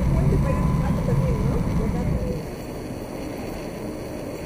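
Low rumble of a moving train heard from inside the carriage, with faint, indistinct voices. About two and a half seconds in, the rumble cuts off and gives way to the quieter, even hum of a large station hall.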